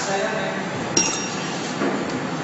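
LED bulb aging test line running, its conveyor of bulb holders giving one sharp, ringing clink about a second in and a weaker one near the end, over a steady background of machine and room noise.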